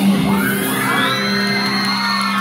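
A rock band holds one chord on electric guitars, ringing steadily as the song ends. Over it the audience whoops and cheers, with rising shouts from about half a second in.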